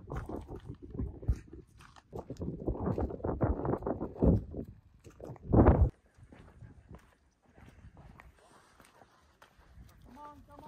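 Footsteps on a gravel path with wind buffeting the microphone in irregular gusts, loudest just before six seconds in; then it drops suddenly to a faint outdoor hush.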